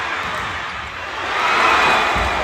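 Indoor arena crowd noise during a volleyball rally, swelling into loud cheering about one and a half seconds in.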